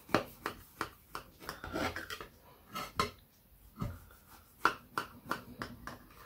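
Kitchen knife cutting through a baked apple sponge pie, its blade crackling and scraping through the top crust in an irregular string of short clicks, two or three a second.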